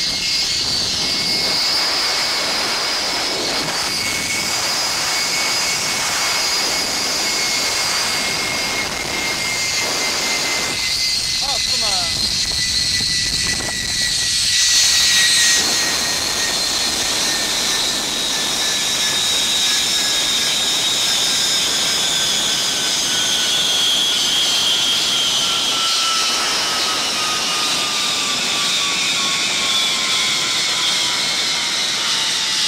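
Zipline trolley pulleys running along a steel cable, a steady whine that slowly falls in pitch as the trolley loses speed, over wind rushing past the microphone.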